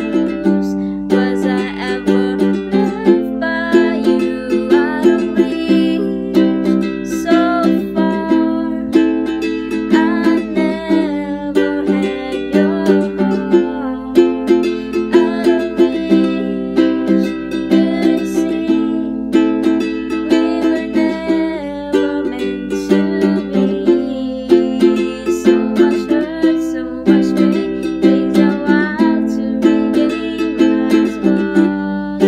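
Ukulele strummed in a steady, repeating rhythm of chords, with a woman singing the melody over it.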